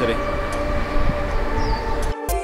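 Low, steady outdoor rumble of city background noise with a faint steady hum.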